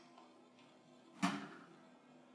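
A single short clink of glassware about a second in, as sherry is poured from a cut-crystal decanter, over faint background music.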